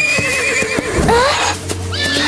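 A pony whinnying, its call wavering in pitch.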